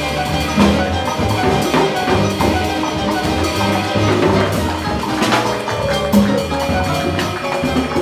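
Afro-Cuban jazz played live by piano, upright double bass and drum kit, with the bass walking under piano and cymbal-and-drum rhythm; no trumpet is playing.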